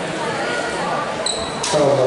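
A basketball bouncing on a hardwood gym floor amid voices from the crowd and benches. A short high-pitched tone comes a little over a second in, followed by a sharp knock and louder voices near the end.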